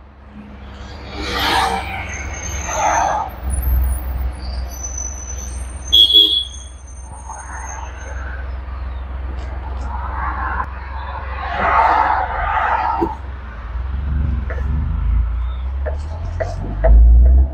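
Tata Intra V20 bi-fuel pickup's 1.2-litre engine running on CNG, a steady low rumble that grows louder a few seconds in, with a short high beep about six seconds in.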